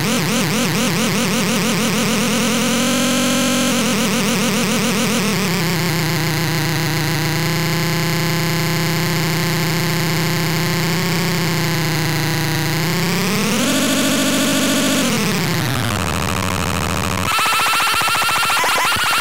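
Circuit-bent VTech Little Smart Tiny Touch Phone putting out a buzzy electronic drone whose pitch slides as a knob is turned. It pulses quickly at first, holds a steady tone through the middle, sweeps up and then down, and near the end switches abruptly to a harsher, fast-pulsing tone.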